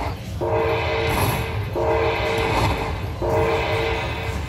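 Dragon Link slot machine paying out its hold-and-spin bonus: a chord of held electronic tones sounds three times, about every second and a half, as fireball credits are added to the rising win meter, over a low steady rumble.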